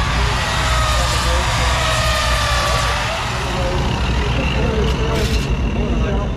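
Steady low rumble of racing engines running in the distance at a dirt track, with a short hiss about five seconds in.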